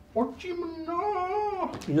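A voice gives a short note and then a long, high, wavering cry held for over a second, more like an animal's whine than speech.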